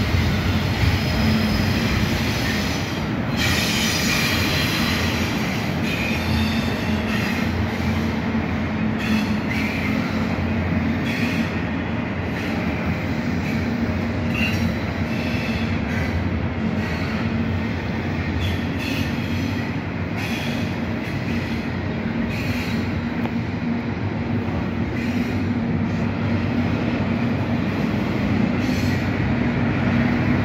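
Freight train of double-stack intermodal well cars rolling steadily past: a continuous rumble of steel wheels on rail with scattered clicks.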